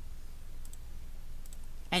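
Two faint computer mouse clicks, a little under a second apart, over a steady low electrical hum.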